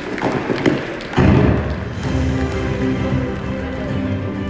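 Hand clapping, then music starts abruptly about a second in, with steady held tones, and plays on loudly.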